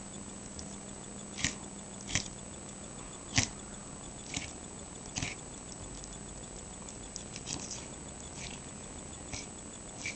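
Kitchen knife cutting raw chicken thigh meat away from the bone on a wooden cutting board: short sharp clicks and scrapes at irregular spacing, about one a second, the loudest about three and a half seconds in.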